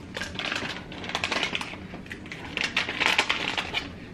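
Thick plastic-foil MRE food pouch crinkling and crackling in irregular bursts as it is torn and peeled apart by hand.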